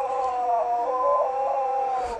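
A child's voice holding one long, drawn-out note without words, slowly falling in pitch, with a brief wavering about halfway through.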